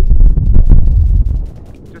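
Strong gusts of wind buffeting the camera microphone: a loud, low, rough rumble that drops away about one and a half seconds in.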